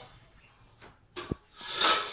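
Handling noise: a small knock a little past the middle, then a short rubbing scrape that builds toward the end.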